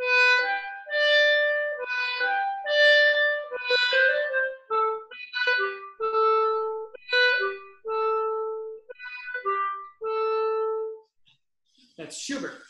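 A clarinet playing a short melodic phrase, its notes set off by small bursts of air, a microburst articulation exercise turned into music. Quicker notes come first, then longer, lower held notes, and the playing stops about a second before the end.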